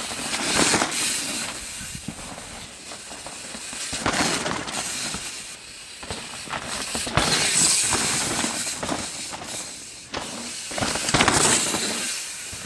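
Mountain bike tyres rolling over a dirt trail as the Yeti SB150 passes close by several times. Each pass is a rising and falling rush of tyre noise with clattering knocks from the bike, about four passes in all.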